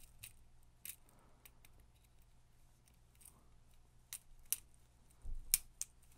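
Faint, scattered small metal clicks of split ring pliers with silver steel jaws working a steel split ring and hook on a lure, with a quicker cluster of clicks near the end.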